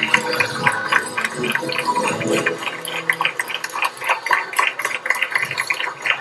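Audience applauding after a folk dance performance: a dense, irregular clatter of clapping that goes on steadily.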